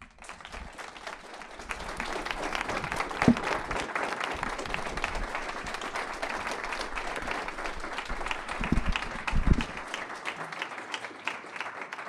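Audience applauding: the clapping builds over the first two seconds, holds steady, and thins out near the end. A few dull thumps come through about three seconds in and again around nine seconds.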